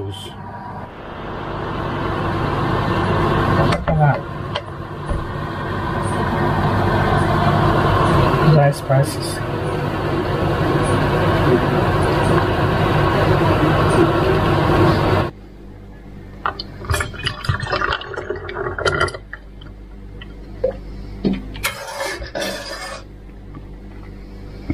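A loud, dense, steady sound builds up and runs for about fifteen seconds, then cuts off suddenly. What is left is quieter scattered clinks and knocks of a metal ladle against a steel pot and a funnel as tomato sauce is ladled into a bottle.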